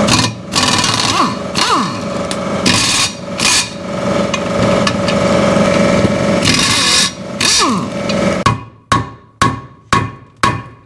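Impact wrench hammering for about eight seconds at a rusted, seized bolt on a Caterpillar D4 exhaust manifold without breaking it loose, followed by a few sharp hammer blows on the manifold near the end.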